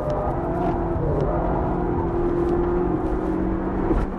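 Toyota Vitz GRMN's supercharged four-cylinder engine heard from inside the cabin, pulling hard at high revs at full throttle, its note held steady and climbing slightly, over road and tyre rumble.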